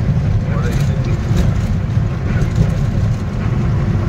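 Truck engine running under way, with road noise: a steady low rumble.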